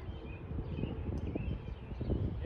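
Outdoor ambience: a low, steady rumble with a few faint bird chirps scattered through it.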